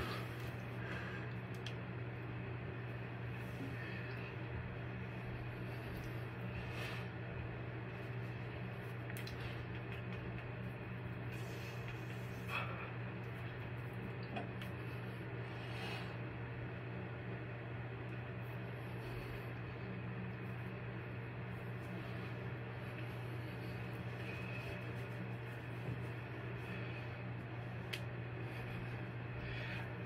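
A steady low hum fills the background, with a few faint, scattered clicks and cracks from joints popping as a body bends and flexes. The cracking comes from the ankle, back and shoulder.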